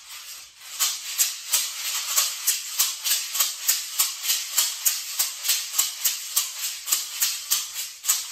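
A pair of bead-filled maracas shaken in a steady, even rhythm of about four crisp shakes a second, starting about a second in.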